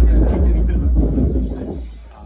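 Electronic dance music (trance) with a heavy bass line, played loud through a DJ's PA speaker. The music falls away sharply near the end.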